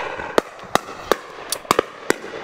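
Several shotguns firing in quick succession, about six shots in two seconds, some louder and some fainter.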